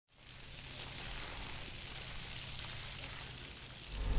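A water jet from a hose spraying and splashing onto a barge's planked deck, a steady hiss of spray, with a low steady hum underneath.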